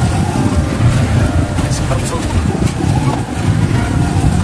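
Motorcycle tricycle engine running with a low, uneven rumble, with people's voices in the background.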